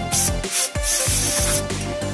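Aerosol electrical contact spray hissing onto an electrical connector in two bursts, a short one at the start and a longer one from about a second in, over background music.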